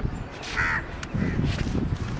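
A bird cawing once, a short harsh call about half a second in, over a continuous low rumble.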